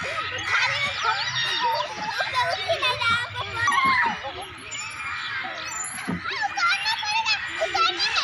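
Several young girls chattering and calling out over one another as they play together, their high voices overlapping throughout.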